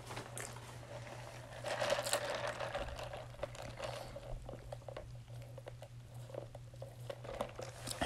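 Close-up mouth sounds of drinking: a drink sucked up through a straw in a wet, hissing stretch starting about two seconds in, followed by swallows and small wet clicks.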